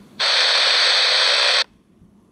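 JGC WE 055 portable world-band radio's loudspeaker giving a loud burst of hiss for about a second and a half, which cuts off suddenly: static as the receiver is switched from long wave over to FM.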